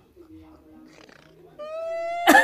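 A quiet pause, then about a second and a half in a woman's voice begins one long held note that rises slightly and leads into her speech.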